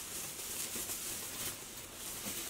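Quiet rustling of sequin fabric and its lining as the shorts are handled and turned inside out, over a steady low hiss.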